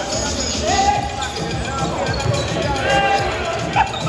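Live basketball game sound: a basketball bouncing on the hardwood court amid players' voices and calls.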